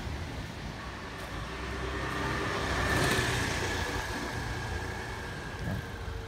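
A road vehicle passing by, its sound swelling to a peak about halfway through and then fading, with a faint steady whine.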